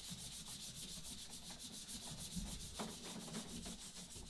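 Faint rubbing of a cloth worked over varnished plywood canoe planking, with a few weak, irregular strokes. It is the sound of thinned varnish being massaged into the fissures of the wood.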